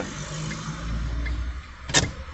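Low rumble and hiss inside a car's cabin, the rumble swelling for a moment in the middle, with a short sharp click just before the end.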